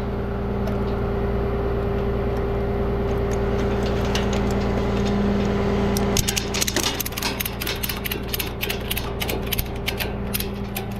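Ratchet buckle on a tow strap being cranked tight: a run of sharp metallic ratchet clicks, several a second, starting about six seconds in. Underneath, an idling truck engine hums steadily.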